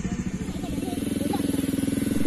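A motorcycle engine idling steadily with an even, rapid pulse, with faint voices in the background.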